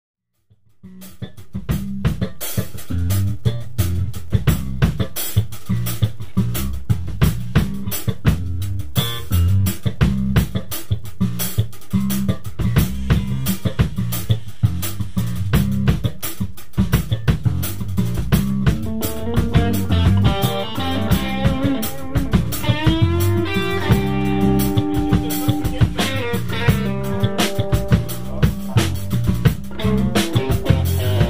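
A live band playing an instrumental groove on drum kit, bass guitar and electric guitar, fading in about a second in. From about twenty seconds in, a lead melody with bending, held notes rides on top.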